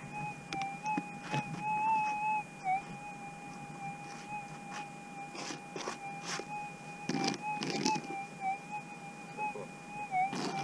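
Gold metal detector humming a steady threshold tone that wavers and dips slightly now and then, as soil is passed over the coil to pinpoint a small nugget. Handfuls of dirt and gravel give short crackling rustles, most of them in the second half.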